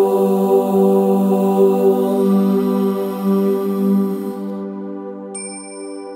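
A man's voice holding a long chanted 'Om' that fades out about four and a half seconds in, over a steady musical drone. Near the end a high chime rings once and lingers.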